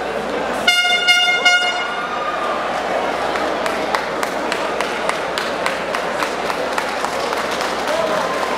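A horn sounds about a second in, one pitched blast of about a second that pulses three times, marking the end of the grappling bout. It is followed by crowd noise with scattered clapping.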